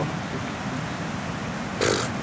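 Steady noise of ocean surf breaking on the beach, with a short hiss near the end.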